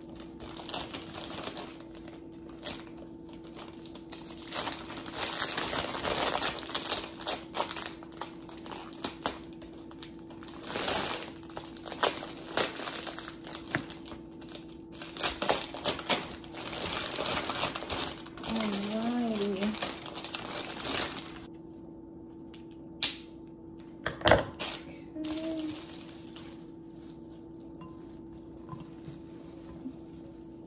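Crinkly plastic bouquet wrapping rustling and crumpling in repeated bursts as a bunch of roses is unwrapped. It quietens after about twenty seconds, leaving a few sharp clicks.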